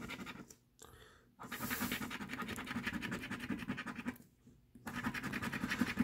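A coin scraping the coating off a paper scratch-off lottery ticket in rapid strokes, in bouts with brief pauses, the longest pause a little past four seconds in.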